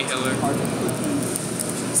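Indistinct voices talking in the background, with no clear words.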